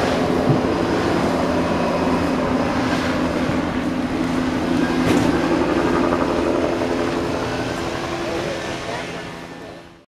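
Steady outdoor background noise with a low hum and indistinct voices, fading out over the last couple of seconds.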